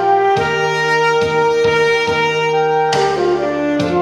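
Saxophone playing a Korean trot melody in long held notes over a backing track with a steady beat.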